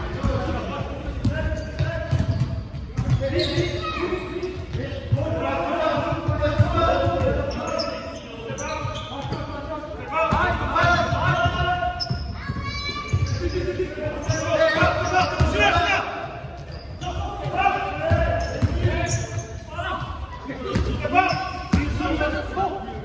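Basketball bouncing on a sports-hall floor during play, echoing in the large hall, with players' voices calling out throughout.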